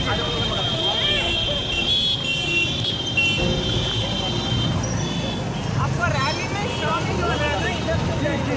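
Crowd voices and shouting over the low rumble of motorcycle engines moving slowly through the crowd, with a held high tone during the first three seconds.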